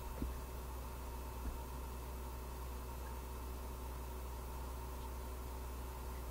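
A steady low electrical hum under a faint even hiss, with a couple of faint knocks in the first second and a half.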